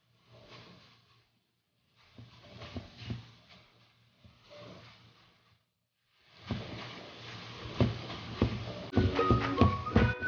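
Silicone spatula stirring and scraping a crumbly milk-powder and sugar dough around a nonstick frying pan in three short bursts. Background music comes in about six seconds in and carries a melody from about nine seconds.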